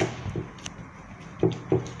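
Hands patting and pressing a ball of bread dough flat on a board, giving a few soft knocks and taps, with a cluster of duller thumps about one and a half seconds in.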